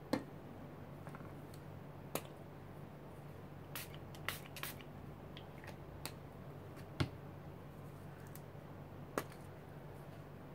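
Finger-pump spray bottles of homemade gel-food-colouring ink misting onto paper: about eight short pump clicks and brief sprays, spaced irregularly, over a faint low steady hum.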